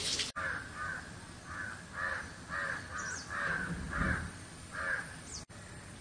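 A bird calling over and over, about nine short harsh calls in some five seconds.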